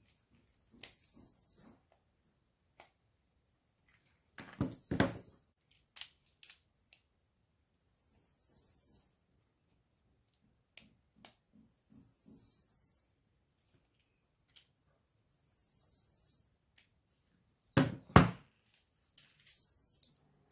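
Plastic cell holder of a dismantled Ryobi battery pack, loaded with lithium-ion cells, being handled, with knocks and clunks against the workbench. The loudest clunks come near the end, as it is set down. A faint high chirp repeats about every four seconds.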